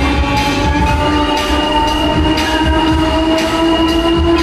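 Mondorf Break Dance ride running, its drive giving a steady multi-tone whine over a deep hum that slowly rises in pitch as the ride speeds up.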